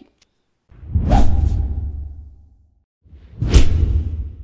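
Two whoosh transition sound effects for an animated logo end screen, each with a deep rumbling low end. The first swells sharply about a second in and fades out over nearly two seconds. The second hits about three and a half seconds in.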